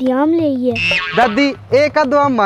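A voice speaking in sharp rises and falls of pitch, with a brief hiss about a second in; the words were not written down.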